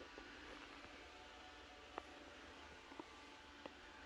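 Near silence: room tone, with three faint, brief clicks in the second half.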